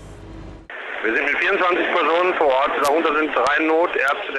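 A man speaking over a telephone line, his voice thin and cut off above the middle range, starting just under a second in after a moment of low background rumble.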